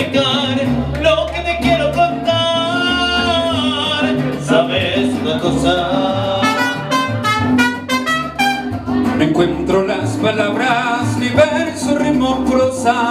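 Mariachi band performing live: a male voice singing into a microphone over strummed guitars, with trumpets playing around the middle.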